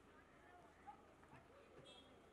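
Faint, low-level voices of people talking over a steady background hum, with one brief louder sound about a second in.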